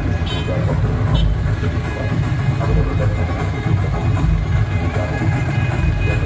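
A lorry's diesel engine running low and steady close by, mixed with music and people's voices.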